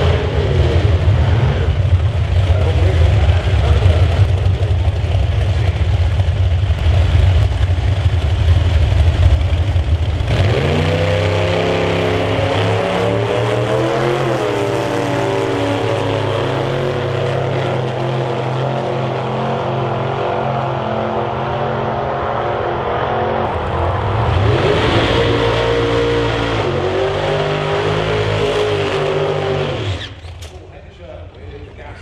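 Outlaw Anglia drag-racing cars' engines, loud throughout. A deep rumble fills the first ten seconds, then the engine note runs on with its pitch shifting in steps, and rises and falls again about 25 seconds in.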